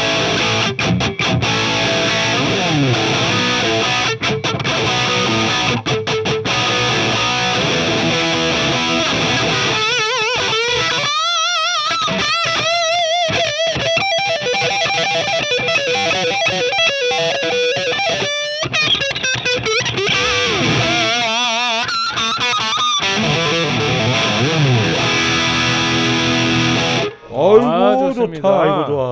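Sterling by Music Man Axis AX3FM electric guitar played through a Marshall JCM2000 high-gain distorted tone: fast riffing, then lead lines with sustained, bent notes and wide vibrato, and a quick sweeping pitch glide near the end.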